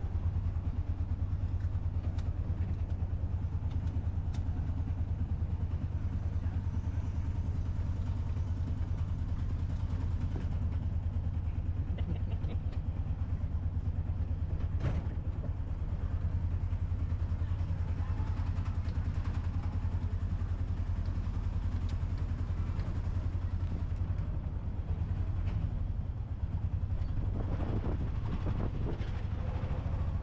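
A tuk tuk's small engine runs steadily under way, heard from the open passenger seat: a low drone with a fast, even pulse that holds steady throughout.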